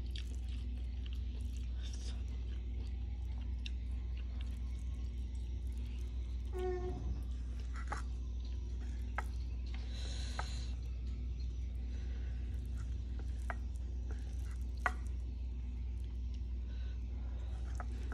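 Close-up eating sounds: scattered soft chewing and mouth clicks over a steady low hum, with a short hiss about ten seconds in.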